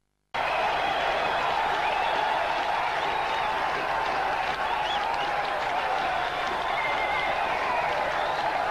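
Stadium crowd cheering and applauding a wicket for the fast bowler, a steady wash of crowd noise that starts after a brief silence at the very beginning.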